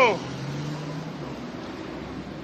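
A person's voice ending a drawn-out sound just after the start, followed by a low steady hum.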